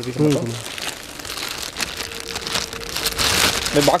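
Clear plastic wrapping crinkling and rustling as a packed motorcycle seat is handled, loudest about three seconds in.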